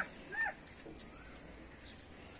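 A brief animal call about half a second in, then faint, steady background.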